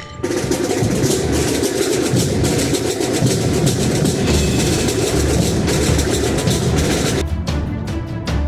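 Marching band at a parade playing drums. A dense, rapid drum cadence starts suddenly just after the opening. About a second before the end it gives way to a steadier beat with bass drums and a held band tone.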